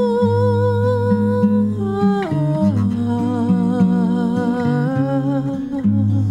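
A woman sings a wordless melody with vibrato over acoustic guitar: a long held note that slides down about two seconds in, then settles on a lower held note.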